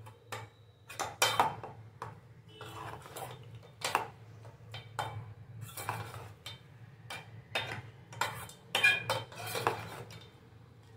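A metal spoon scraping and clinking against the inside of a metal pot while stirring tempered rice, in irregular strokes about one or two a second, with a steady low hum underneath.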